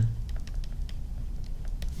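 Pen tip tapping and clicking against a tablet screen while handwriting, a quick run of small irregular clicks.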